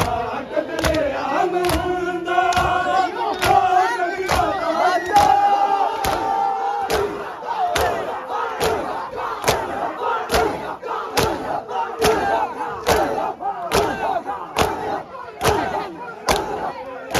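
Men doing matam, the Shia mourning rite of chest-beating: bare-chested hand slaps land together in a steady beat of nearly two a second. A crowd of male voices chants loudly with the beat, strongest in the first half.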